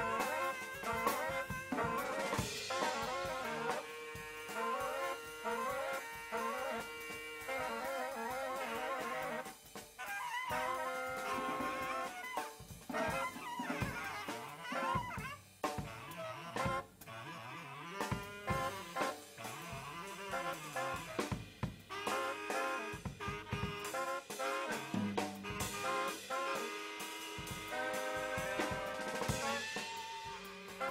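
Live jazz: a baritone saxophone playing held notes and quick runs over a drum kit with cymbals.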